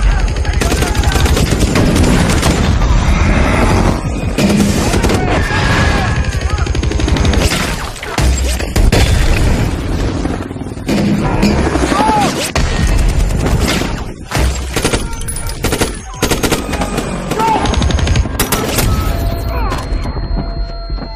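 Film battle soundtrack: dense automatic gunfire with explosions, mixed over a music score.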